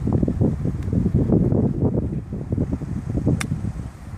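A golf iron strikes a ball once, a single sharp click about three and a half seconds in, over steady wind noise on the microphone.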